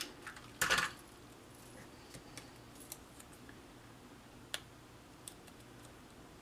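Small punched cardstock pieces being handled on a wooden tabletop: a brief papery scrape about half a second in, then a few faint light clicks as the pieces are picked up and fitted together.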